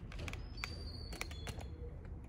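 Faint clicks and rustles of a phone camera being handled and repositioned at close range, a few soft knocks spread over the two seconds, over a steady low room rumble.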